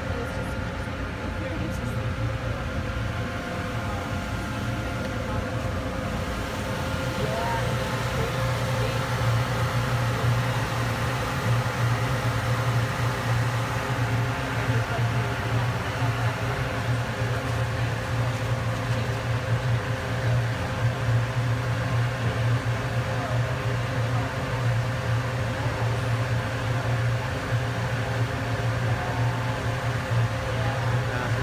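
Ferry engine running with a steady low drone and a constant higher tone, growing slightly louder about seven seconds in, with faint voices of passengers underneath.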